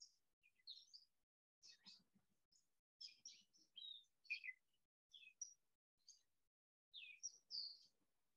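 Faint small birds chirping and twittering: many short, high chirps scattered throughout, loudest a little past halfway and again near the end.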